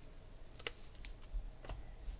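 A few light clicks and taps of trading cards being handled and set down on a table, the sharpest about two-thirds of a second in.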